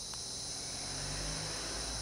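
Steady high hiss of air being blown through the hose of a new GM clutch hydraulic actuator (concentric slave cylinder), testing whether air passes through it.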